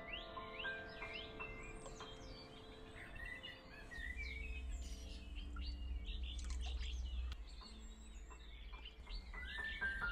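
Birds singing and chirping, with background music under them. A low rumble runs from about four to seven seconds in.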